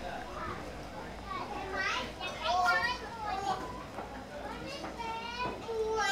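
Children playing and calling out, their high voices coming in short bursts, loudest about two to three seconds in and again near the end.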